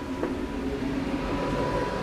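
A steady low mechanical hum with a thin, faint steady whine over it, and one light click about a quarter second in.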